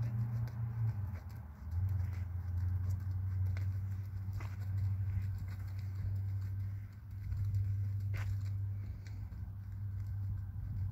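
A horse's hooves falling softly and unevenly on arena sand, heard as faint scattered knocks under a steady low hum.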